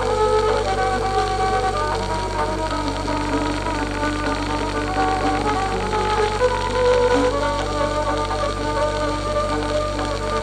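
Hindustani classical music on violin with piano and tabla accompaniment, played from a 1940s 78 rpm shellac disc. The melody moves in held and sliding notes over a steady low hum and the disc's surface hiss.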